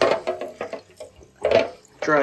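Tap water running from a bathroom faucet and splashing off a plastic light cover held under the stream in the sink. The sound surges at the start and again about one and a half seconds in.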